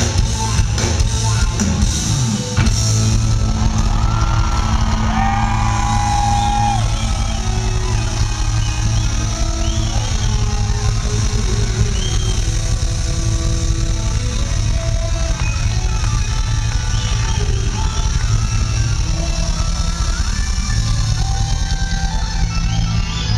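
Live rock band playing loud, with electric guitar to the fore and a heavy low end, heard from the audience.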